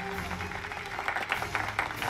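A crowd clapping: scattered claps that thicken into applause about a second in, over background music.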